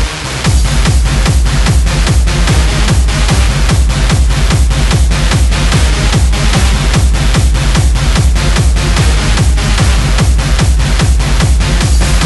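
Hardstyle dance music from a DJ mix: a steady kick drum at about two and a half beats a second over heavy bass and dense synths. The beat drops out briefly at the start and comes back in about half a second later.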